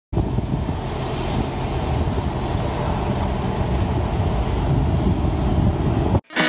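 Steady, loud low rumble of outdoor wind buffeting the microphone, with a few faint ticks above it.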